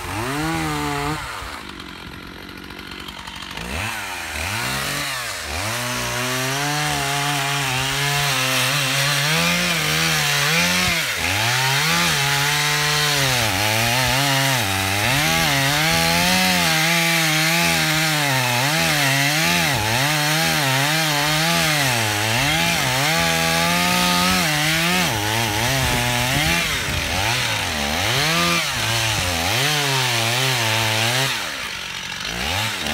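Two-stroke chainsaw cutting into the base of a tree trunk, its engine speed repeatedly dipping and rising as the chain bites into the wood under load. It is quieter for a couple of seconds near the start, then revs up and cuts steadily.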